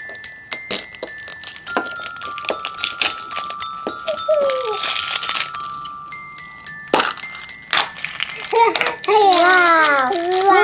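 Hard plastic surprise egg clicking and rattling in the hands as it is worked open, with a sharp snap about seven seconds in, over light music of held chime-like notes. A small child's voice rises and falls near the end.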